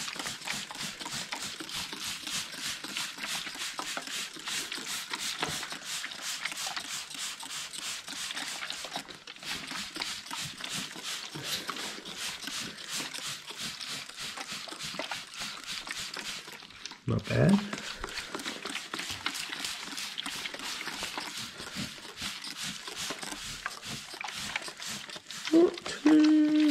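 A handheld trigger spray bottle squeezed rapidly and repeatedly, a long run of short hissing spritzes onto a sanded carbon-fibre panel, with brief breaks about nine and sixteen seconds in.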